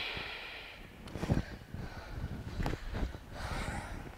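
A woman's hard breath as she hops her legs up into a handstand, then a thud of her feet landing on a yoga mat about a second in, followed by a couple of lighter knocks and another breath near the end.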